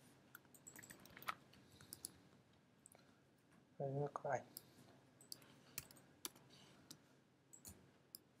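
Faint, irregular clicks of computer keyboard keys and a mouse as code is edited.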